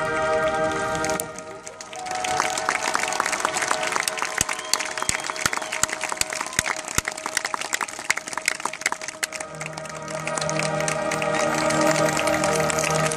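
Marching band's held final chord cuts off about a second in, followed by audience applause and cheering for several seconds. A sustained chord of band music comes back in near the end.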